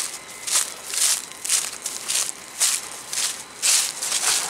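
Footsteps walking over grass and dry fallen leaves, a crunch with each step, about two steps a second.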